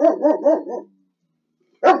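A man's voice finishing a spoken sentence, then stopping abruptly for about a second of silence.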